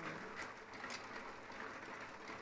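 Faint clicks of plastic mahjong tiles being turned face up and set down on the table, a couple of light knocks.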